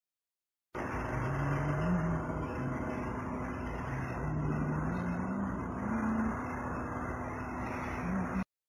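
An engine or motor running, starting abruptly just under a second in, its pitch climbing in steps, falling back and climbing again, over a steady hum and a broad rushing noise.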